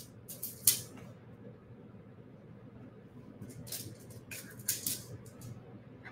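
Small glass and metal beads clicking and rattling as they are picked from a bead tray and handled, a few light clicks just under a second in and a cluster of them about four to five seconds in.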